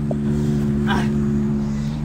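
Pickup truck engine idling steadily, with a brief soft noise about a second in.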